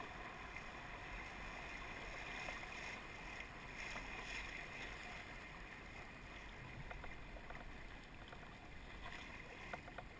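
Steady rush of shallow river water flowing around a kayak hull, with a few faint knocks from the kayak paddle.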